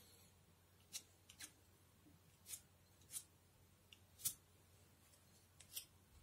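A paintbrush stroking paint onto paper: a series of faint, short scratchy strokes, about eight in the few seconds, the loudest a little past the middle.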